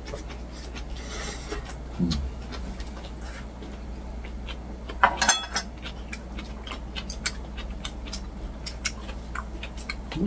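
A person chewing a mouthful of dressed lettuce and rice, with irregular small mouth clicks and smacks over a steady low hum. A short grunt comes about two seconds in, and a brief ringing clink about five seconds in.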